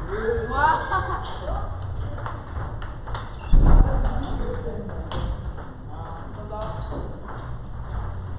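Table tennis rallies on several tables at once: celluloid-style plastic balls clicking off bats and tables. A loud thump comes about three and a half seconds in.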